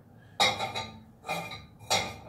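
A cooking pot clanking three times as rice is knocked and scraped out of it. Each clank rings briefly, and the first is the loudest.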